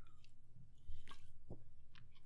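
A quiet pause in room tone, with a faint steady low hum and a few soft clicks.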